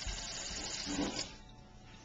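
Kitchen faucet water splashing into a stainless steel sink, cut off as the tap handle is turned about a second in.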